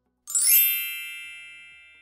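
A single bright chime sound effect, struck about a quarter second in and ringing out with a slow fade over about two seconds, used as a transition cue.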